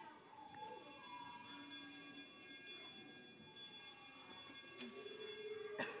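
Altar bells rung by a server at the elevation of the consecrated chalice: a soft, steady ringing of several high tones, with a sharp click near the end.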